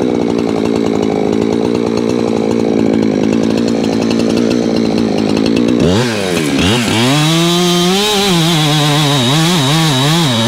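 Gas chainsaw bucking a felled hickory log. For about six seconds the saw runs at a steady pitch, then its pitch swings up and down as it revs and bogs in the cut.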